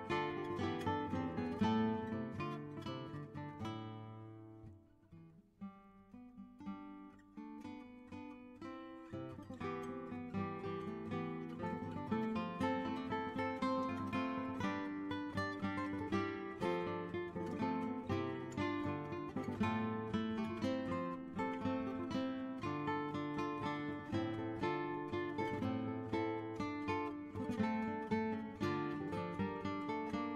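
Background music: solo plucked guitar playing an early-music piece in a steady stream of notes. It drops almost to quiet about five seconds in, then builds back up to full level.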